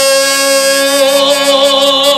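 A man singing one long held note into a handheld microphone, amplified through the church sound system; the note is steady and stops right at the end.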